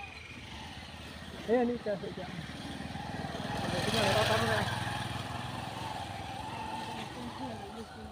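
A motorcycle passing close by: its engine grows louder to a peak about four seconds in, then fades away.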